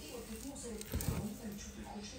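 A person's voice talking low, with a dull thump about a second in.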